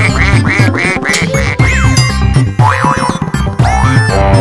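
Bouncy children's-song backing music with cartoon duck quack sound effects, a quick run of about six quacks in the first second and a half.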